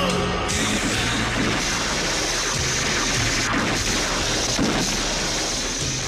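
Cartoon transformation sound effect: a dense rushing, crackling noise like a lightning surge, starting about half a second in, laid over dramatic music.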